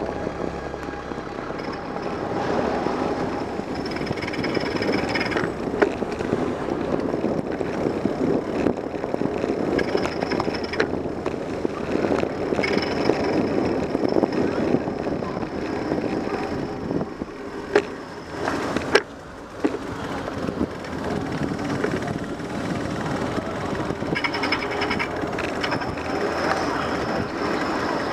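Riding noise of a bicycle on a city street as picked up by a bike-mounted camera: a steady rumble of tyres on pavement and passing traffic, with a few sharp knocks and rattles as the bike goes over bumps and a thin high whine that comes and goes.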